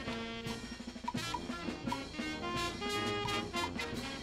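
Brass band playing: trumpets and sousaphones over drums and cymbals, with a steady beat.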